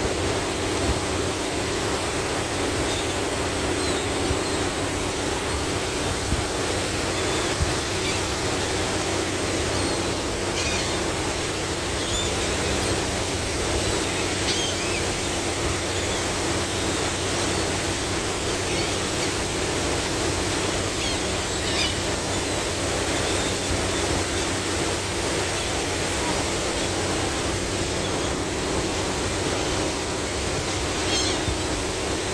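Steady rush of a ferry's churning wake water and wind, with the ship's engine droning underneath. A few faint, short high calls from the gulls following the wake come through now and then.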